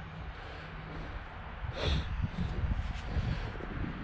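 Camera handling noise and wind rumbling on the microphone, with a brief rustle about two seconds in.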